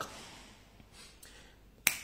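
Faint room tone, then a single sharp finger snap near the end.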